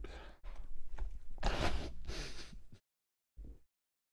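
A man's breathy, wordless laughter close to the microphone, in several bursts of air, trailing off near the end.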